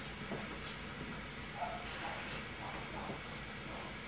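A few faint snips of grooming shears cutting a cocker spaniel's foot hair, over a steady background hiss.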